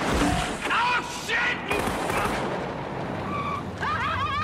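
Film car-chase soundtrack: a loud bang at the start, then more shots and bangs about one and two seconds in, over a steady rush of car and street noise.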